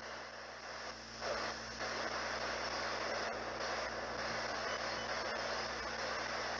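Ghost box (a radio scanning rapidly through stations) giving out steady hissing static with a low hum underneath; the static gets louder about a second in.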